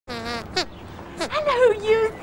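Sweep the glove puppet's squeaker voice: several high, wavering squeaks with bending pitch, in short speech-like phrases.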